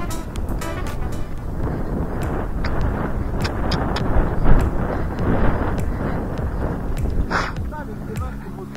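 Loud rushing noise of wind and movement on a helmet camera's microphone while the horse moves at speed, with a few scattered clicks and a brief brighter burst near the end.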